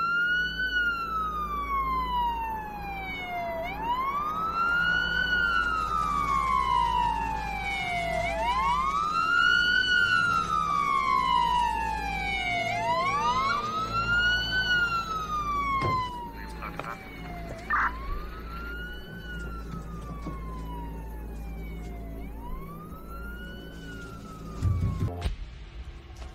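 Police car siren wailing, its pitch rising and falling about every four and a half seconds, with a second wail running slightly out of step, over a steady low drone. A brief sharp sound cuts in about two-thirds of the way through.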